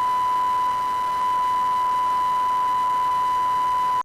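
Steady line-up test tone on a broadcast news feed's audio circuit: one unwavering pure pitch, the identifying tone that alternates with the spoken circuit ident. It cuts off at the end as the voice ident starts.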